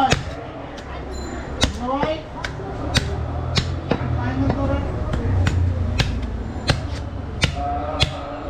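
Butcher's cleaver chopping a goat's head on a wooden chopping block: a steady run of sharp chops, each a little under a second apart.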